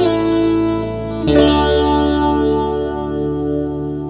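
Instrumental blues music led by electric guitar: a held chord gives way to a new chord struck about a second in. The new chord rings on with a slow wavering pulse and gradually fades.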